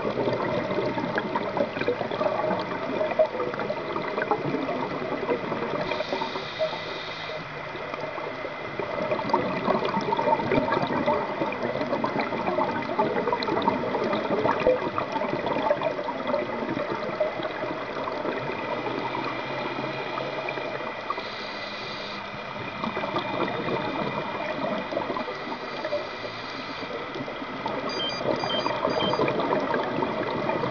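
Underwater sound of scuba diving: a steady, dense crackle and rush of water with the bubbling of regulator exhaust, rising and falling slightly in level. A faint steady high tone runs underneath.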